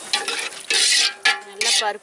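Steel ladle stirring liquid in a large aluminium pot, in several short strokes, the loudest three in the second second.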